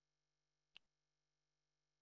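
Near silence: a muted meeting audio feed, with one faint short click a little under a second in.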